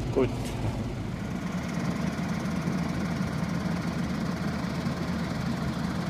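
Tractor engine running steadily, a low even hum.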